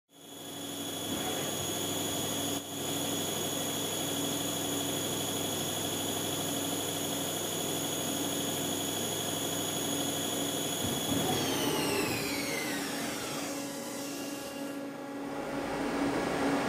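Mazak CNC lathe spindle running with a steady high whine while the tool faces an aluminum bar. About eleven seconds in, the whine falls steadily in pitch as the spindle slows down.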